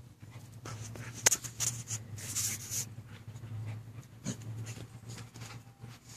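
A Rottweiler puppy and a larger black dog play-wrestling: panting and huffing breaths with scuffling, and a sharp snap about a second in.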